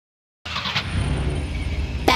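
After about half a second of silence, a low rumble with a hiss above it starts abruptly and holds steady: the opening of a pop song's recording, just before the vocals come in.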